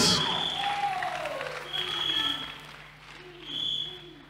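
A church congregation responds in a pause of the sermon with scattered voices and clapping over short held notes from a church keyboard, fading away in a reverberant hall.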